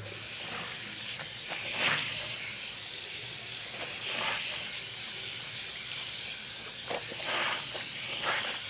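Tap water running steadily into a bathroom sink, with a few louder splashes as clothes are washed by hand in it.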